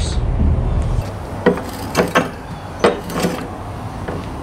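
Metal tools being handled: a ratchet and oxygen sensor socket are set onto an oxygen sensor in an exhaust pipe, giving about five separate, irregular sharp clacks. A low rumble stops about a second in.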